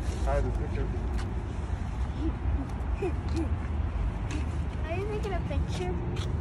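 Short, scattered bits of high-pitched voice over a steady low rumble.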